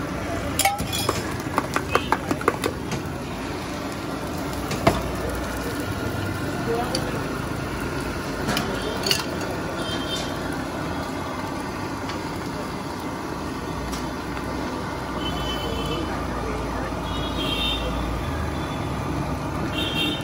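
A spoon clinking in quick succession against a steel mug as egg is beaten, for the first few seconds. Then egg batter sizzling on a hot iron griddle over steady street noise and background voices.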